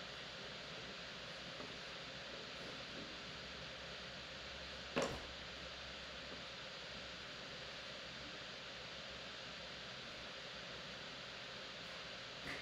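Steady background hiss, with one sharp knock about five seconds in.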